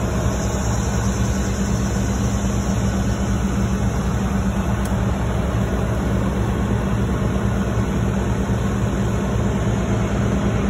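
Heavy concrete pump truck's diesel engine running steadily at an even, low pitch.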